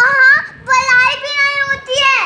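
A young child's voice singing out loudly: a short phrase, then one long, high, held note that drops off just before the end.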